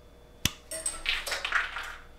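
Flush cutters snipping through 3D-printer filament where it sticks out of a Bowden tube: one sharp snip about half a second in, followed by softer rustling of handling.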